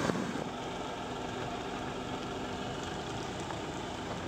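Steady car noise heard from inside a moving car's cabin: engine and road noise with a faint constant hum.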